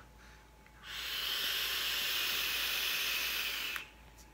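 Long draw on a Reload RDA clone (rebuildable dripping atomizer) with the coil firing: a steady hiss of air rushing through the atomizer, starting about a second in and lasting about three seconds before it stops suddenly.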